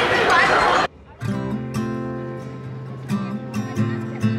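Voices chattering for about the first second, then a sudden cut to background music led by a strummed acoustic guitar.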